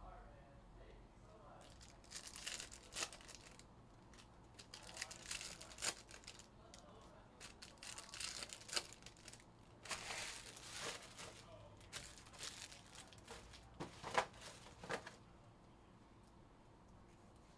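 Foil wrappers of Panini Prizm baseball card packs being torn open and crinkled, in repeated bursts of crackling about every two seconds.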